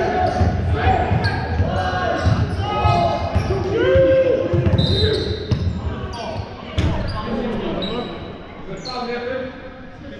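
Live basketball play in a large echoing sports hall: the ball bouncing, shoes squeaking on the wooden court, and players shouting. A single sharp bang comes about seven seconds in, and the play dies down over the last two seconds.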